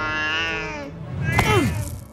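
A cat meowing: one long, drawn-out meow lasting about a second, then a shorter cry that falls in pitch.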